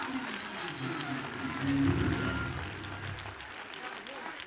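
Church music with low sustained chords, swelling about halfway through and fading near the end, over congregation clapping.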